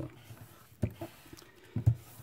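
Hands pressing and creasing a folded sheet of paper flat against a tabletop: a few short soft knocks and rustles, the loudest near the end.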